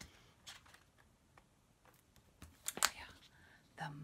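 Hardback picture book being opened and handled: soft paper and cover rustles, with one brief, louder rustle about three seconds in.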